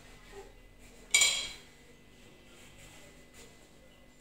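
A spoon clinks once, sharply, against a ceramic plate, about a second in, and the ring dies away within half a second.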